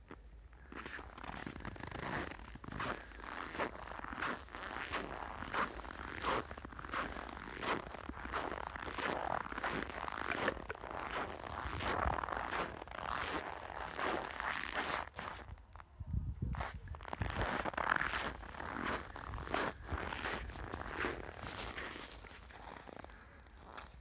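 Footsteps crunching in snow at a walking pace, a continuous run of short scraping crunches.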